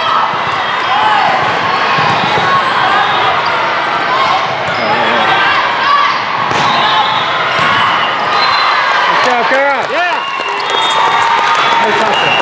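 Volleyball rally in a large, echoing hall: the ball is struck with sharp slaps, two standing out about six and a half seconds in and near the end, over steady chatter and shouts from players and spectators.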